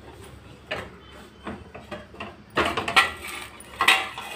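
Stainless steel pot and its steel bowl lid being handled: a few light knocks, then louder metal clanks with a brief ringing about two and a half seconds in and again near the end.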